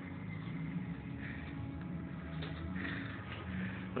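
A steady low mechanical hum, with a few soft rustles of clothing brushing against the phone.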